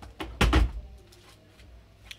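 A few knocks, then a heavier clunk about half a second in, from a metal baking tray being handled and set down on the counter.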